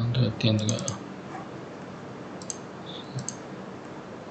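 Computer mouse and keyboard clicks: a few in the first second, one about halfway, then a quick double click near the end. A brief low murmured voice in the first second.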